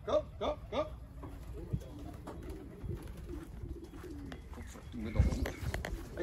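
A man calling racing pigeons down with a rapid 'kom, kom, kom' for about the first second, then domestic pigeons cooing softly for several seconds. A loud low thump comes about five seconds in.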